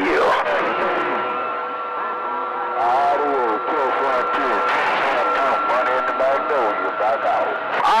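CB radio receiver audio on channel 28: faint, garbled voices of distant stations coming in on skip. Steady heterodyne whistles run through them, the carriers of more than one station beating against each other.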